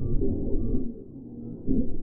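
Low, drawn-out droning tones of an ambient space soundtrack, all in the low register. They dip in level a little past the middle and swell back near the end.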